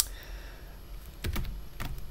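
A few scattered keystrokes on a computer keyboard as a terminal command is typed. A sharp click at the start is the loudest, and a couple of fainter ones follow a little past the middle.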